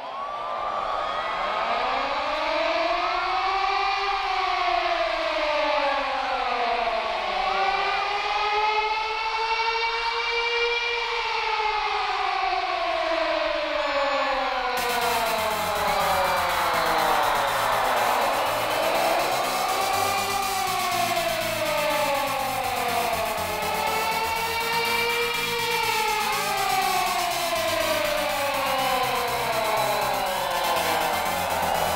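Siren-like wails of a concert intro, several pitches overlapping and each slowly rising and falling. About halfway in, a hiss of noise and a low pulse join underneath.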